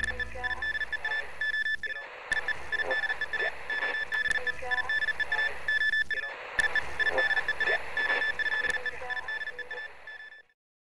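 Electronic jingle with a rapid, alarm-like beeping tone over a busy backing. It repeats about every four seconds, with short breaks near 2 s and 6 s, and fades out at the very end.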